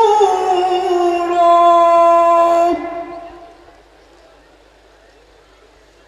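A man's voice holding a long sung note of a recitation through a PA system, the pitch sliding slightly down. The note ends about three seconds in, with a short echo.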